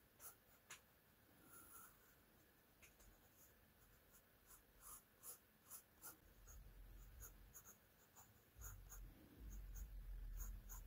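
Graphite pencil scratching on sketchbook paper in short, quick, irregular strokes, faint. A low rumble joins from about six seconds in and grows near the end.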